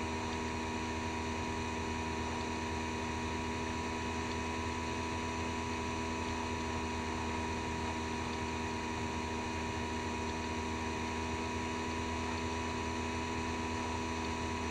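Electric motor of a small T03 bench lathe running steadily with a polishing wheel fitted: an even hum with several fixed tones over it.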